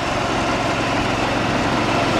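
A small vehicle engine running at a steady pace, with wind rushing over the microphone as he rides.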